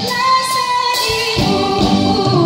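A female singer sings through an amplified PA over a live band, holding one long note in the first second before the band's fuller accompaniment comes back in.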